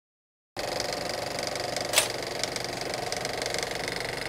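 Film projector running: a steady, rapid mechanical clatter that starts suddenly about half a second in, with one sharper click about two seconds in.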